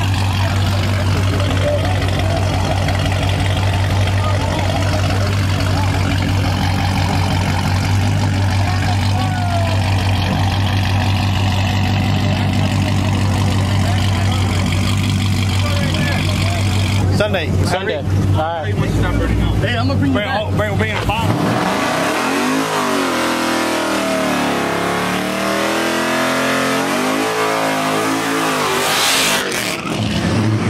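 Dodge Charger V8 idling steadily, then from about two-thirds of the way through revving up and down over and over. Near the end a short hiss as the rear tyres spin into a smoky burnout.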